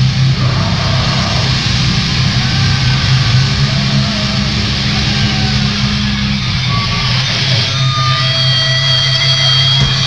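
Live grindcore band playing loud: distorted guitars and bass over fast drumming. About six and a half seconds in the drums drop out and the guitars ring on, with high feedback tones near the end as the song closes.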